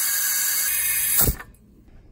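Compressed air hissing steadily from an air chuck pressed onto the valve of a pressure-test gauge, pressurising the plumbing line for an air pressure test. It cuts off abruptly about a second in.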